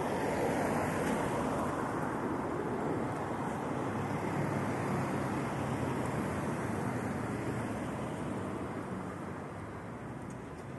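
Steady rushing noise of road traffic, a little louder in the first few seconds and easing off slightly near the end.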